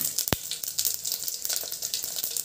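Cumin seeds crackling and sizzling in hot oil in a stainless steel pot: the tempering stage, with one sharper pop about a third of a second in.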